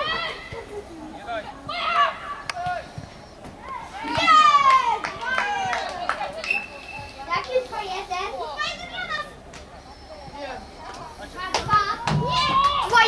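Children's voices shouting and calling across a football pitch, several at once, with the loudest run of high shouts about four seconds in.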